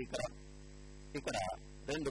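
Steady electrical hum with a row of even, unchanging overtones, running under the audio throughout. Two short snatches of a man's voice break in, about a tenth of a second in and just past a second in.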